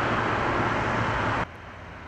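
Steady road traffic noise from cars on a multi-lane highway, which drops abruptly to a quieter level about one and a half seconds in.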